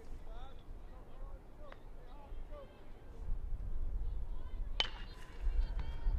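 A single sharp crack of a bat hitting a pitched baseball about five seconds in, sending a hard line drive toward first base. Faint shouts from players on the field come before it.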